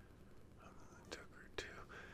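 Near silence: a man whispering faintly under his breath, with two soft clicks a little after a second in.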